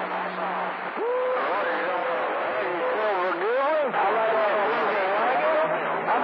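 CB radio receiving distant skip on channel 28: constant static with a steady whistle that comes in about a second in, then warbling tones and garbled, unintelligible voices.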